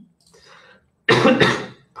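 A man coughs once, a short harsh burst about a second in, after a faint breath.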